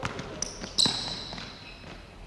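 Basketballs dribbled on a hardwood gym floor, a few bounces, with a high ringing tone starting a little under a second in and fading away.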